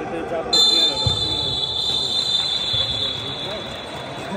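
A referee's whistle in one long, high, steady blast. It starts suddenly about half a second in and fades out over about three seconds, over crowd chatter with a couple of dull ball thuds.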